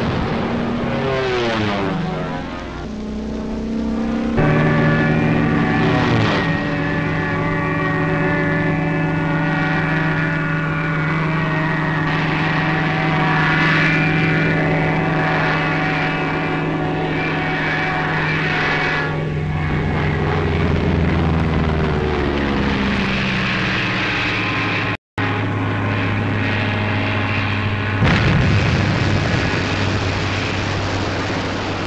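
Propeller aircraft engines droning: a plane passes with its engine note falling in pitch, then a steady drone of many tones, and a second falling pass about twenty seconds in. A brief cut-out comes shortly before a rough rumble near the end.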